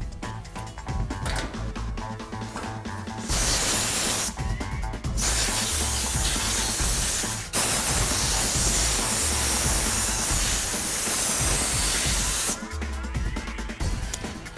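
Compressed-air blow gun blasting water off rinsed handgun parts in a wire basket. A loud hiss of air comes in a short blast about three seconds in, then a longer blast of about seven seconds, broken for an instant partway through.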